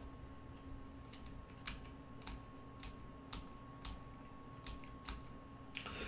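Faint, sharp clicks of computer input, about a dozen at irregular intervals of roughly half a second to a second, as the moves of a chess game are stepped through one by one. A faint steady electrical hum sits under them.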